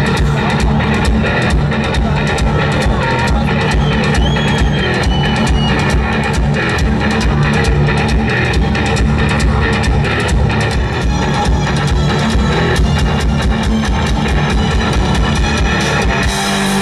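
Heavy metal band playing live: electric guitars, bass guitar and a fast, steady drum-kit beat in a loud instrumental passage.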